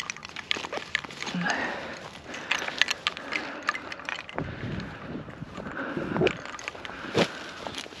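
Rustling and crackling footsteps through grass while a downed goose is carried and handled, its feathers brushing, with many scattered sharp clicks.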